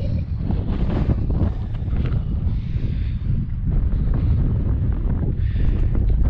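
Wind buffeting a camera microphone: a low rumble that rises and falls with the gusts.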